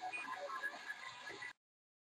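Faint room background with small indistinct noises, then the sound cuts out to dead silence about a second and a half in.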